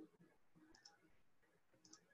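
Two faint computer mouse clicks about a second apart, each a quick press-and-release tick, over near-silent room tone.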